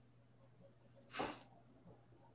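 A single short, sharp burst of breath from a person about a second in, over a faint steady electrical hum.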